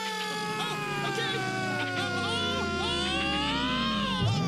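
A man's long, drawn-out scream held through a fall, with a whistle-like tone gliding steadily down underneath it, as in a cartoon falling effect.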